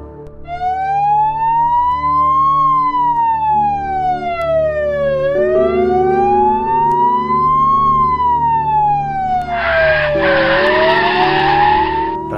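Ambulance siren wailing, its pitch slowly rising and falling in long sweeps, about two and a half cycles, over soft background music. A rush of noise joins it near the end.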